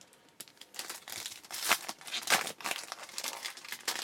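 Silver foil trading-card pack wrapper being crinkled and torn open by hand: a run of irregular crackles, loudest about halfway through.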